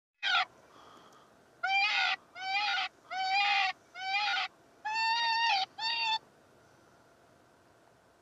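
A series of seven shrill, drawn-out whining animal calls, each about half a second long with short gaps between, the pitch rising and falling slightly within each call.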